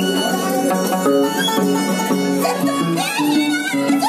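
Violin and Andean harp playing a huayno together: the bowed violin carries the melody while the harp plucks a low, steadily changing bass line under it.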